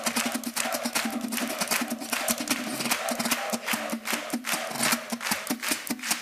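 Venezuelan cuatro strummed solo, fast and rhythmic, with crisp percussive strokes coming several times a second.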